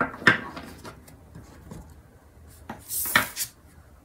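Tarot cards handled on a tabletop: two sharp taps near the start as a card is laid down, then a short papery scrape about three seconds in as the card is picked up and turned over.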